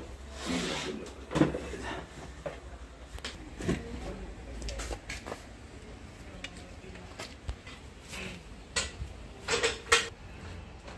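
Old corded power tools being handled: plastic and metal housings knocking and clattering, with a series of separate knocks. The loudest come about a second and a half in and again near the end.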